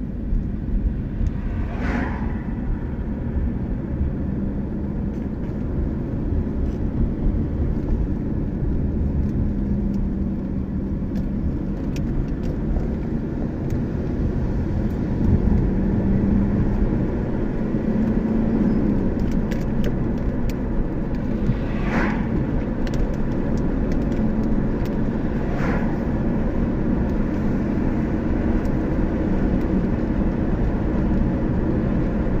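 A car driving steadily along an open road, heard from inside: a constant low rumble of engine and tyres. Three short whooshes come through, the first about two seconds in as oncoming vehicles pass.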